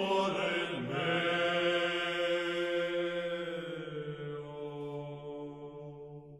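Medieval Latin chant sung by a group of voices: the phrase slides down about a second in and ends on one long held low note that slowly fades away.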